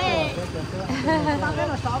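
Women talking in a group, one voice after another: speech only.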